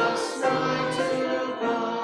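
Church congregation singing a hymn together, notes held and changing about every half second. The singing begins to fade near the end as a phrase closes.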